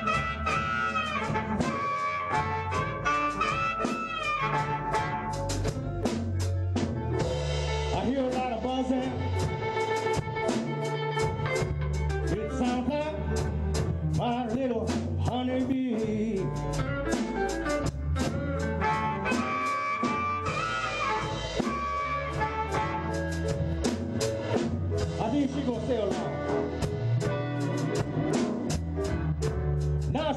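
Electric blues band playing an instrumental passage: amplified harmonica cupped to a microphone plays bending lead lines over a steady drum-kit beat, electric bass and keys.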